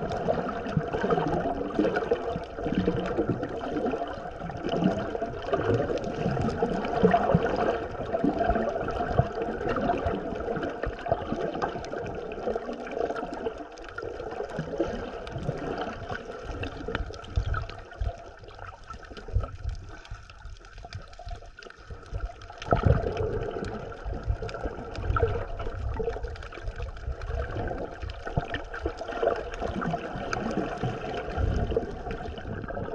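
Water gurgling and moving around a camera held underwater: a continuous muffled wash with small irregular knocks and crackles. It goes quieter for a few seconds past the middle, then picks up again suddenly.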